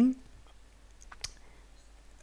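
A couple of faint computer mouse clicks a little over a second in, over quiet room tone.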